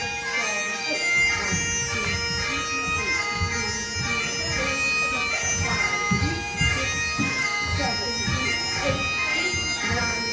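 Highland bagpipe music, the drones holding one steady note under the chanter's tune, played as dance accompaniment.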